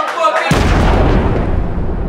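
A deep boom sound effect hits suddenly about half a second in, cutting off crowd voices, and then slowly fades.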